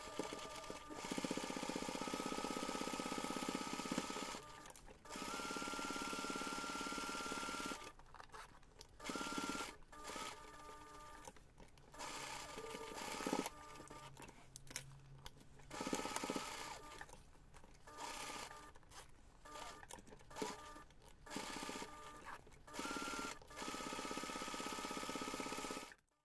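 Domestic electric sewing machine stitching in several runs of a few seconds with short pauses between them, basting a fabric panel and zipper together. Light handling clicks fall in the pauses.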